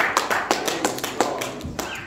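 A few people clapping, a scattered, irregular run of sharp claps.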